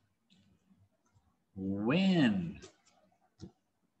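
A man's voice saying one drawn-out word with a rise and fall in pitch, about one and a half seconds in, followed by a few faint clicks and a short soft knock.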